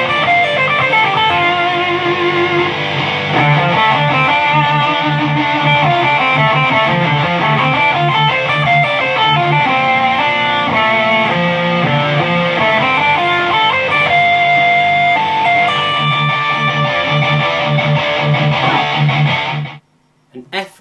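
Electric guitar lead line built on a D minor 7 arpeggio, played over a recorded heavy-metal guitar riff in drop D. The low riff notes pulse in a steady rhythm under the lead, and everything stops suddenly just before the end.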